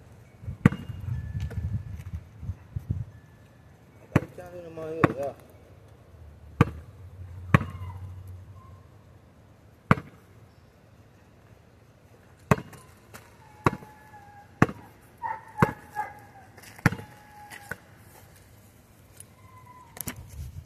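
Basketball bouncing on a packed dirt driveway: single sharp bounces at an uneven pace, coming quicker in the second half.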